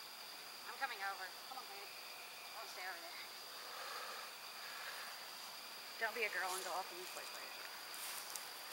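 Faint, unintelligible voices in three short stretches, about a second in, around three seconds and around six seconds, over a steady high-pitched tone and faint hiss.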